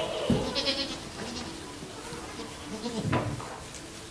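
Goats bleating in a barn pen, several calls overlapping, with a louder bleat about three seconds in.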